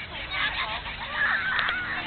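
A flock of gulls calling, many short arched calls overlapping, growing thicker and louder about a second in.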